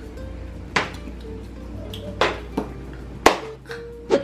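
Soft background music with a simple stepping melody, over which a metal spoon clinks sharply against the pot and dishes four times, the last clink the loudest.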